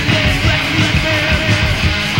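Metal band playing in a lo-fi live rehearsal recording: distorted electric guitars over fast, busy drums, with one long held note wavering slightly through most of it.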